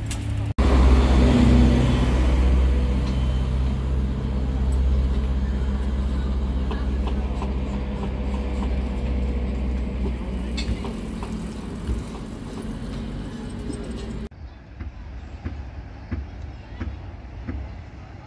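A heavy vehicle's engine hums loudly and steadily beside a road, with traffic around it, then slowly fades. About 14 s in, it cuts abruptly to a much quieter outdoor background.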